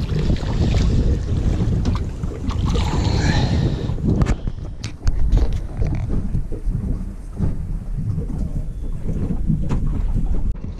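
Loud wind buffeting the microphone on a small boat at sea, with water washing against the hull. A brief sharp knock comes just after the middle.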